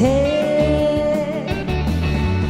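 A woman singing a long held note into a microphone over a loud, fast backing track for a hymn; the note ends about one and a half seconds in while the backing music carries on.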